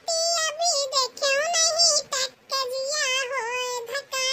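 A high-pitched, pitch-shifted cartoon-character voice singing a song in short phrases, with brief pauses between them.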